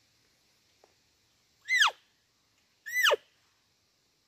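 Elk cow call blown by a hunter: two short mews about a second apart, each sliding down from a high squeal to a lower pitch.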